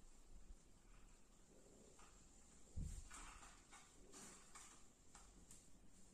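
Near silence with faint clicks and rustles of plastic artificial Christmas tree branches being handled and fitted together, and one soft low thump about three seconds in.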